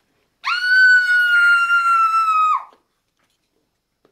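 One long, high-pitched scream lasting about two seconds. It shoots up in pitch at the start, holds almost level, and drops away at the end.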